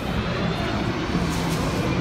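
Capoeira roda music from an atabaque drum and berimbaus, heard as a loud, dense wash of sound with the noise of the crowd in the hall.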